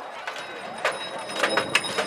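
Horses' hooves knocking on the ground in an irregular scatter of hoofbeats as the jousting horses set off at a ride.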